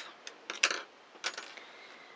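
Small scissors snipping through a yarn tail and being handled: a few short clicks, the loudest just after half a second in.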